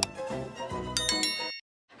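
Quiet tail of an intro music jingle with a click at the start. About a second in comes a bright chime sound effect, several high ringing tones together, which cuts off suddenly before a short silence.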